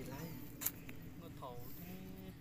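A few short, faint vocal sounds, like brief spoken syllables, with one sharp click about two-thirds of a second in.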